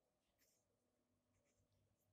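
Near silence, with faint scratching of a ballpoint pen writing on paper.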